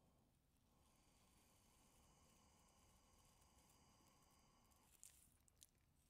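Near silence: faint room tone, with a few soft clicks near the end.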